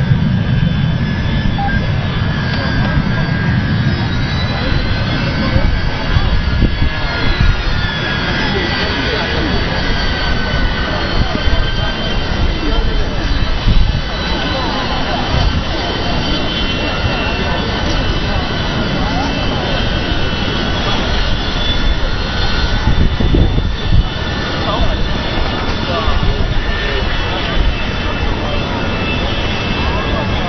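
Jet aircraft engines running in a flypast: a heavy, steady rumble with high whines that slide down in pitch about six to ten seconds in.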